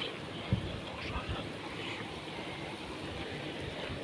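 Steady rushing of a shallow river running over riffles below the footbridge, with a few low thumps of wind buffeting the microphone.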